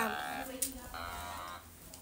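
An Otamatone toy synthesizer played in short electronic notes, one at the very start and another about a second in.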